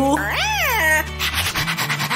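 A cartoon pet's meow-like call that rises and then falls in pitch, lasting about half a second and following a shorter rising call, over background music.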